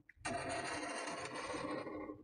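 Felt-tip marker drawn across paper in one continuous stroke of nearly two seconds, an even scraping hiss as a line is traced.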